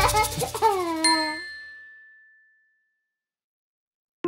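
A cartoon sound effect as the song ends: a few short falling-pitch glides, then a single bright ding about a second in that rings out and fades away.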